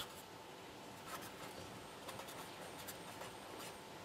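A pen writing on paper: faint, short scratching strokes.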